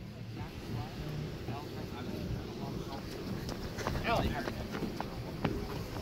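Footsteps on asphalt under faint, distant voices of people talking. A voice comes in louder for a moment about four seconds in.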